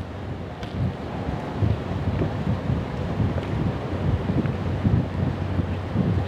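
Wind buffeting the microphone in uneven gusts, over a low steady hum from the sand barge's engine.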